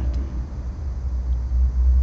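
A steady low rumble with nothing else standing out above it.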